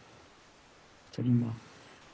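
Faint hiss, then about a second in a single short spoken syllable lasting about half a second.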